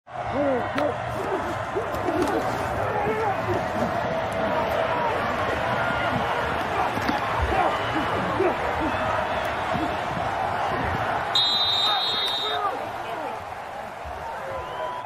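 Game sound from a college football field: a steady din of many voices and shouts, with a few short knocks. Near the end a referee's whistle blows for about a second, ending the play.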